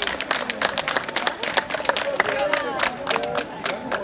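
Crowd applause, many hands clapping throughout, with people's voices calling and talking over it.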